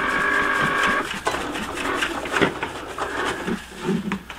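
Cricut cutting machine working through a vinyl cut: a steady whine of several tones from its motors that stops about a second in, followed by shorter, irregular movements. Paper towel rubs on the plastic bucket throughout.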